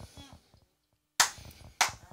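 Two loud, sharp smacks about half a second apart, each dying away quickly.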